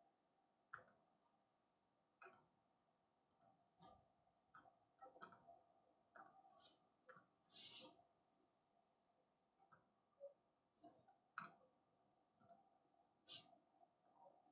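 Faint computer mouse clicks, about fifteen short clicks at irregular intervals.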